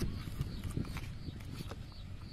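A knife cutting and scraping the seed core out of a raw green bell pepper: a few sharp, crisp clicks over a low rumble of handling.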